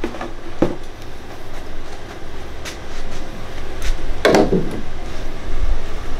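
White PVC vent pipe and fittings being handled and pushed onto a tankless water heater's vent collar: a few light plastic knocks and clunks, the loudest about four seconds in, over a steady low hum.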